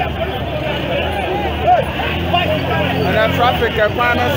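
Crowd of many people talking over one another, with a motor vehicle's engine running under the voices in the second half.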